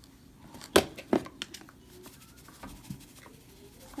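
Hands handling small plastic food tubs on a countertop: a sharp knock about three quarters of a second in, a softer click just after, then a few faint ticks.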